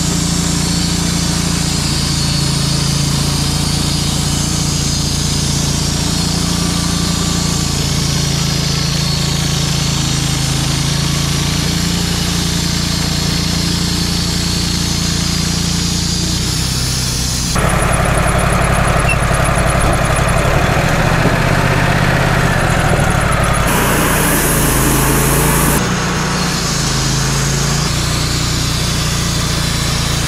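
Wood-Mizer LT35 bandsaw mill running steadily under load as its band blade saws lengthwise through a log. A little past halfway, a louder, rougher noise joins for about eight seconds, then drops back to the steady running.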